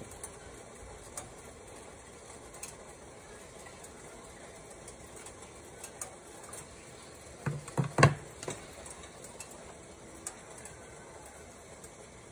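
Water heating in a large metal pot on a stove burner, close to the boil: a faint steady hiss with scattered small ticks. A brief cluster of knocks comes about eight seconds in.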